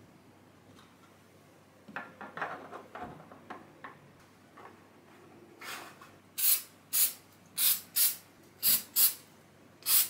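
Light clicks and rustles of 3D-printed plastic parts being handled, then about eight short, loud hisses from an aerosol can of CA glue activator sprayed in quick bursts about half a second apart. The activator spray cures the CA glue, locking the glued tail pieces in place.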